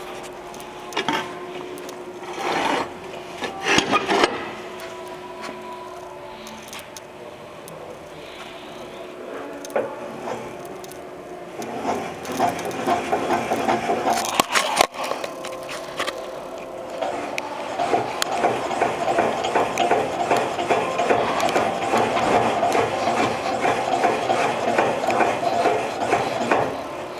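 Makina Sanayi Ferah spindle moulder making mechanical noise: a few separate knocks in the first seconds, then from about twelve seconds in a dense, fast-repeating mechanical run with a steady tone, growing louder about eighteen seconds in.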